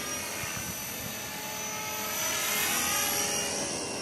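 Blade 450 3D electric RC helicopter in flight at a distance: a steady whir and whine of the motor and rotor blades, its pitch drifting a little as it manoeuvres, growing slightly louder in the middle and then easing off.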